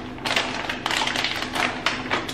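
Plastic bag of shrimp being torn open and handled, crinkling with a rapid run of small crackles and snaps.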